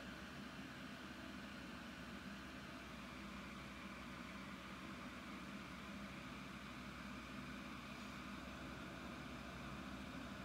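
Steady low hum and hiss of room background noise, with no distinct events.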